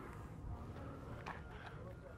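Faint background voices of people talking nearby, with a few small clicks and knocks from moving about on the boat.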